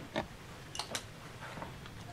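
A few light, short clicks: one just after the start and two close together about a second in, over a faint steady low hum.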